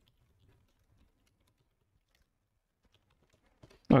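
Faint, scattered keystrokes on a computer keyboard as code is typed.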